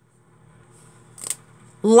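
Paper and clear sticky tape being handled: faint rustling, then one short crackle a little past halfway. A woman's voice starts just before the end.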